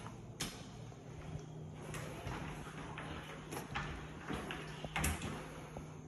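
Closet door being opened: a few sharp clicks and knocks, about one every second and a half, over a steady low hum.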